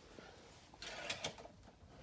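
Faint handling noise from a plastic DVD case being handled, with a short patch of soft clicks and rustling about a second in.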